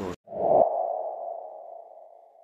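The street sound cuts off abruptly, then a single ping-like electronic tone sounds about a third of a second in and fades slowly: an added sound effect.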